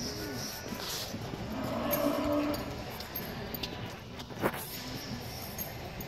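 A cow mooing once from the held cattle herd, a single steady call of about a second, around two seconds in, over steady background noise. A sharp knock follows past the middle.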